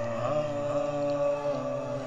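A man's voice singing one long held note that bends slightly in pitch.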